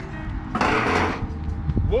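A putter tapping a mini-golf ball, with a short rush of breathy noise about half a second in that lasts about half a second.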